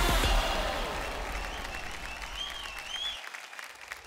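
A studio audience applauding and cheering, fading away over a few seconds. Background music plays under it and cuts off about half a second in.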